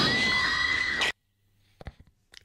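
A woman's high-pitched scream from a horror film's soundtrack, cut off abruptly about a second in.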